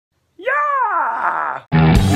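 A man's drawn-out vocal cry, about a second long, rising briefly in pitch and then sliding down. Near the end, rock music with guitar cuts in abruptly.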